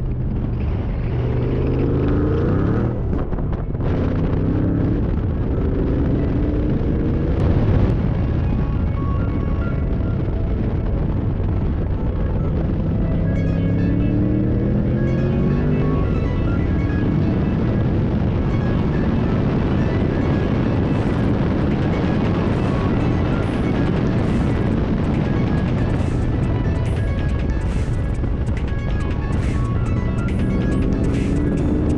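Background music over the supercharged V8 of a Saleen Mustang lapping a road course, the engine rising in pitch and dropping back again and again through the gears. It is being driven at part throttle to keep an engine that overheats at full throttle from getting too hot.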